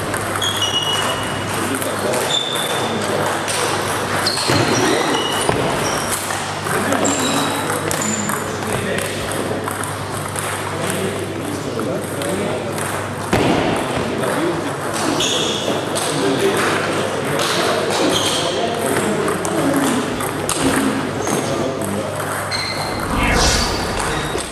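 Table tennis balls ticking off bats and tables at a run of points, over the steady chatter of people and a low hum in a large hall. A loud swish just before the end.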